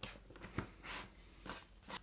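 Faint handling noise as a USB-C adapter plug is pushed into an iPad's port, with a small click about half a second in, and a few soft breaths.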